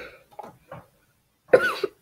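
A person coughing: a few short coughs, the loudest about a second and a half in.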